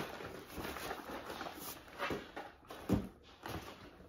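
Faint rustling and a few soft knocks from a cardboard shipping box being opened and unpacked. The clearest knocks come about two and three seconds in.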